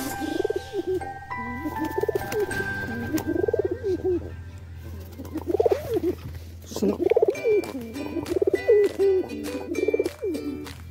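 Domestic pigeons cooing close by: a string of low, rolling coos, loudest in the second half, with background music underneath.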